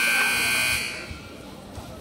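Gym scoreboard buzzer sounding as wrestling time runs out, a loud steady electronic tone with several pitches. It cuts off about a second in, leaving the hall's background.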